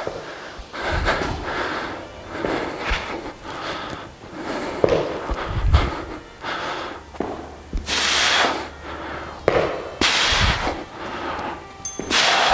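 A man breathing hard from exertion during dumbbell lunges, in a series of noisy breaths, with two sharp, forceful exhalations about eight and ten seconds in. A few dull thuds of his feet stepping on the gym floor come in between.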